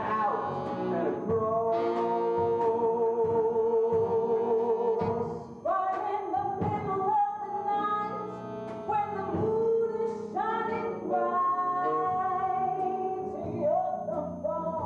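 A woman singing a show tune in long held notes with vibrato, over instrumental accompaniment.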